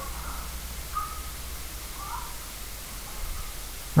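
Room tone in a pause between narration: steady hiss and low hum from the recording, with a few faint short chirps about a second and two seconds in.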